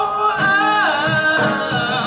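Male voice singing a long held note that bends in pitch, over a strummed acoustic guitar.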